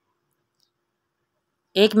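Near silence, then a woman starts speaking near the end.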